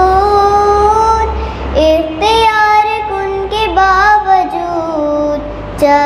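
A young girl singing a naat into a microphone, drawing out long held notes with sliding, ornamented turns between pitches.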